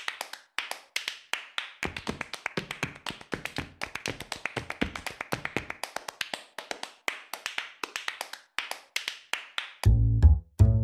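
A solo percussion break in a flamenco-style track: rapid, sharp taps at several strikes a second in an irregular rhythm, with deeper hits mixed in for a few seconds in the middle. The bass and band come back in near the end.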